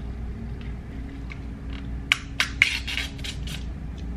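Plastic takeout container and its contents being handled: a quick cluster of sharp clicks and crackles about two seconds in, lasting about a second and a half.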